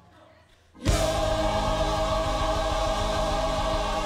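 Gospel mass choir singing: after a brief hush, the full choir comes in together about a second in and holds one loud, sustained chord.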